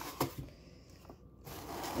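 An open cardboard box being handled: a short knock just after the start, a brief quiet stretch, then rubbing and rustling of cardboard and paper toward the end.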